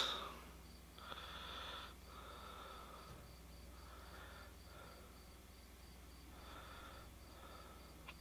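Quiet room tone with faint, soft breaths recurring every second or two.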